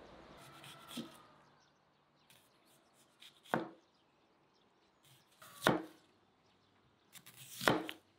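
Knife slicing a red onion into thin rings on a plastic cutting board: three slow cuts about two seconds apart, each ending in a sharp knock of the blade on the board, with small crisp ticks as the blade goes through the onion layers. Before the first cut there is only faint outdoor background.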